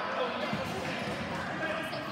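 A basketball bouncing on a gym floor, with background voices in the gym.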